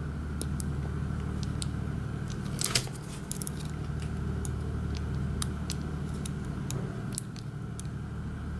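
Faint, scattered metallic clicks and scrapes of a steel lock pick working inside the keyway of an IFAM Uno 80 dimple shutter lock, trying to lift a high security pin, with a cluster of clicks in the middle. A steady low hum runs underneath.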